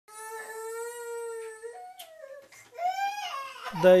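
Toddler crying: one long wail held at a steady pitch for about a second and a half, stepping up in pitch, then a second cry that rises and falls.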